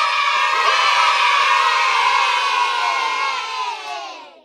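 A group of people cheering and shouting together, many voices at once. The cheering fades away near the end.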